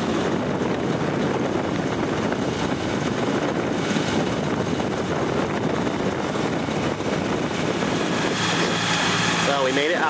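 Steady rushing noise aboard a sailboat underway: wind over the microphone with a low engine hum beneath it. A voice starts near the end.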